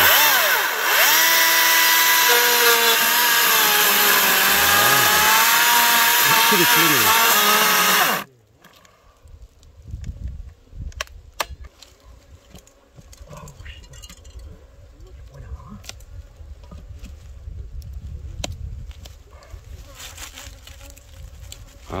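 Greenworks cordless electric chainsaw cutting into a thick tree trunk, its motor pitch dipping and recovering under load, then stopping abruptly about eight seconds in. After that, quiet scraping and light knocks of a hand tool working the cut in the bark.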